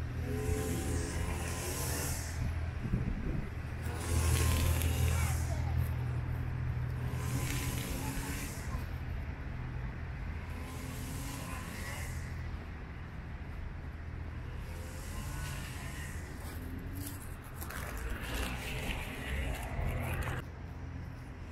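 Street ambience: a steady low rumble of road traffic with cars passing now and then, and indistinct voices of people at times.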